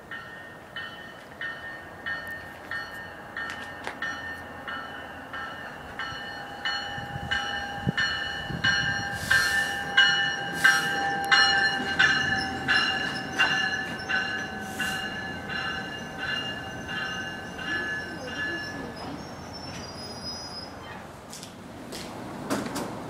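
A railroad warning bell ringing in a steady beat, about one and a half strikes a second, while an NJ Transit train pulls in and passes close with a rising rumble and a burst of hiss. The bell stops a few seconds before the end as the train comes to a stand.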